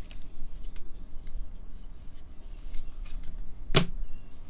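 Gloved hands handling trading cards in clear plastic holders: light rustling and small clicks, with one sharp plastic click shortly before the end.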